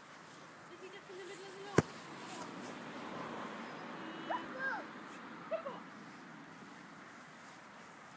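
A football kicked once on a grass lawn: a single sharp thud about two seconds in.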